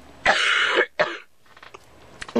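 A woman coughing into her hand: one long, harsh cough about a quarter second in, then a short second cough about a second in. She has a cold and has taken no cough medicine today.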